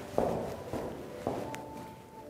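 Footsteps of a person walking away: three steps about half a second apart. A faint click and a thin steady tone follow in the second half.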